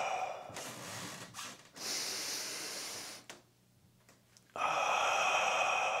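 A man breathing hard during split-squat reps: a long breathy exhale fades out, a hissing breath in comes about two seconds in, and after a second's pause another long exhale begins. The breath is paced with the movement, in on the way down and out while driving up.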